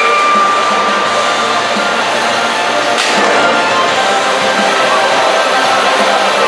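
Electric drive motors of 3 lb combat robots whining, with thin tones that shift as the robots drive, over a steady loud din, and one sharp knock about halfway through.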